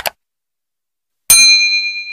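Subscribe-button sound effect: a short click, then about a second later a bright notification-bell ding that rings out and fades.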